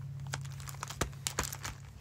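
Scattered light clicks and short rustles from small scrapbook embellishments and paper being handled on a craft desk, over a steady low hum.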